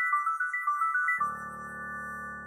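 Short intro jingle. A quick run of high, bright notes, about eight a second, ends about a second in on a held chord with a low bass, which starts to fade.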